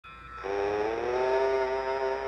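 A long held tone with many overtones sounds under the opening logo. It comes in about half a second in, glides slightly upward, then holds steady.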